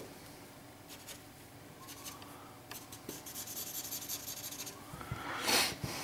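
Felt-tip marker rubbing on paper in repeated shading strokes, with a quick run of back-and-forth strokes in the middle and a louder scrape near the end.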